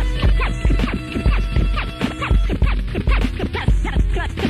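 Turntable scratching by a hip hop DJ: rapid back-and-forth cuts on a record over a steady drum-machine beat with heavy bass hits, with a few held keyboard notes underneath.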